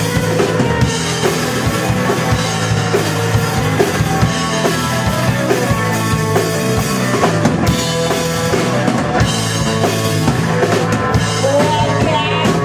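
Live rock band playing, loud: drum kit with steady kick and snare hits under electric guitar and bass.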